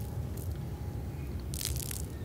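Soft footsteps on a grass lawn over a low steady outdoor rumble, with one louder scuffing step near the end.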